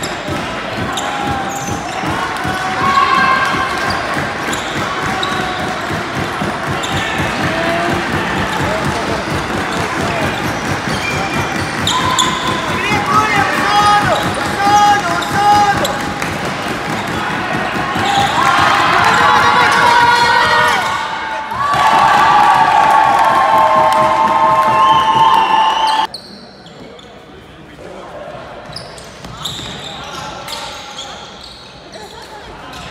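Ultimate frisbee players calling and shouting to each other on an indoor court, with running steps and shoe squeaks on the wooden floor, echoing in a large sports hall. About 26 seconds in, the sound drops suddenly to quieter hall noise.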